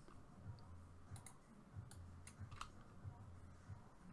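Faint computer mouse and keyboard clicks, a handful of them scattered through, over a low steady hum: otherwise near silence.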